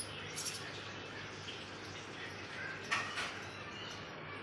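Faint, short high-pitched cheeps from nestling birds being hand-fed with a syringe, over a steady hiss, with one sharper, louder burst about three seconds in.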